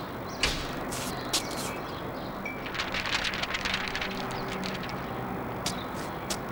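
Street ambience: a steady hiss with scattered sharp clicks, and a burst of rapid ticking lasting about a second, around three seconds in.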